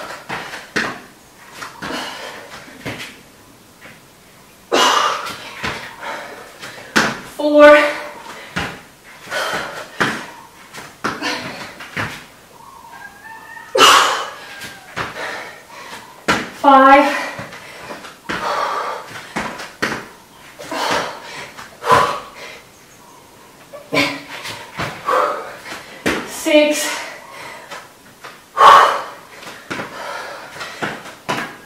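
Repeated thuds of a person's feet landing on an exercise mat during jump lunges, burpees and turning jumps, coming at an uneven pace about once or twice a second. Short pitched voice-like exertion sounds fall between the landings.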